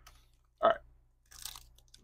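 Foil wrapper of a Panini Donruss football card pack crinkling as it is torn open by hand, a short, faint rustle in the last second or so.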